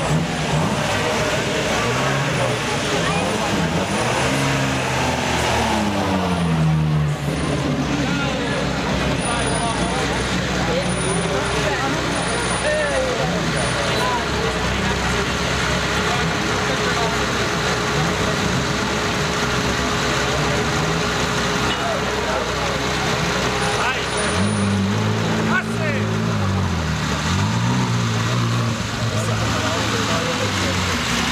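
Car engines idling and being blipped as cars drive slowly past at walking pace, their pitch rising and falling in two spells, near the start and again from about 24 seconds in, over the chatter of a crowd.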